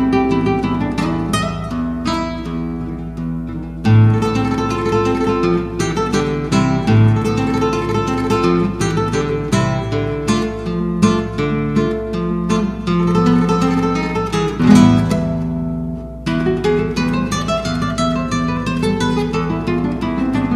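Solo classical guitar playing a fox incaico, with plucked melody notes over a bass line. The music dips briefly about four seconds in and fades near the sixteenth second, then resumes with a rising run.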